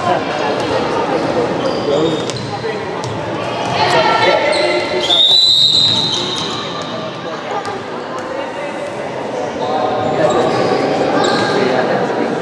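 Youth handball match in a large sports hall: the ball bouncing on the wooden floor among children's shouts and sneaker squeaks. A referee's whistle blows once, about five seconds in, just under a second long.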